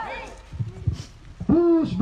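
A protest chant shouted through a megaphone, starting after a brief lull about one and a half seconds in: short, evenly pitched syllables in quick succession.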